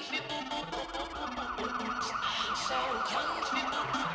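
Electronic dance music from a DJ mix. About a second in, a siren-like warbling tone enters over the bassline, wavering rapidly up and down about five times a second.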